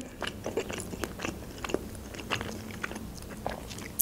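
A mouthful of pepperoni pizza being chewed close to the microphone: a scatter of small, irregular wet clicks and soft crunches.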